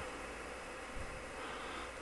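Faint steady background hiss of room tone, with a slight tap about a second in.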